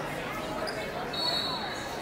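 Echoing ambience of a large, busy tournament hall: distant voices and chatter, with a thin steady high tone starting about halfway through.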